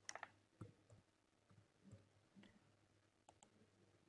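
A handful of faint, scattered computer keyboard keystrokes and mouse clicks, as a short PIN is typed in and submitted, in near silence.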